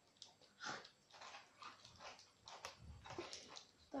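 Near silence with faint, scattered soft rustles and small noises as hands fumble at the plastic caps of water bottles, thumbs taped down.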